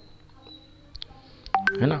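Two short electronic beeps about one and a half seconds in, a lower tone then a higher one, over faint background hiss. A man's voice says a couple of words near the end.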